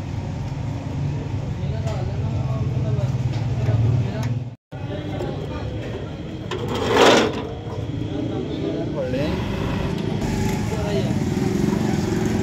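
Repair-shop background: a steady low hum with voices behind it, broken by a sudden cut, then the same kind of busy background with one short loud burst of noise about seven seconds in.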